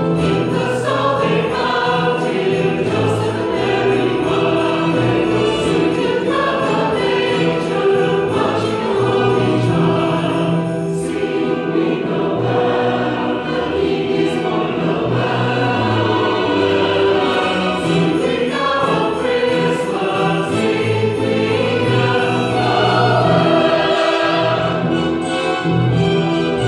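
Mixed choir of men and women singing together from the choir loft, continuous and steady.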